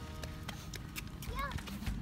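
Footsteps on concrete, a few light irregular clicks, with a child's brief "yeah" about a second in.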